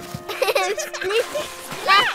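Young cartoon children's voices laughing and squealing over soft background music, with the loudest high squeal near the end.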